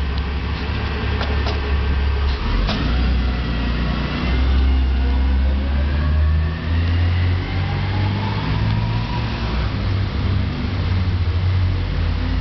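Small car's engine running at low speed and revving as it edges back and forth out of a tight parallel parking space, its pitch slowly rising over several seconds over a steady low rumble. Two short knocks come in the first few seconds.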